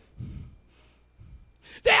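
A short breath into a handheld microphone, then near silence until a man's voice starts again near the end.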